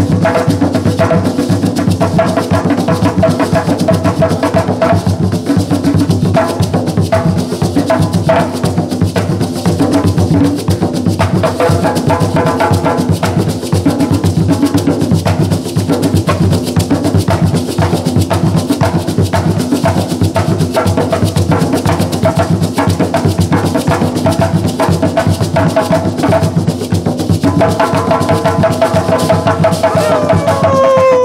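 Gwoka ensemble of ka hand drums playing a dense, continuous rhythm, with the chacha calabash shaker raised and shaken over the drums.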